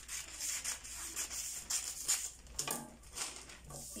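Scissors cutting through a large sheet of paper pattern paper, a run of short snips mixed with the paper rustling and rubbing on the table.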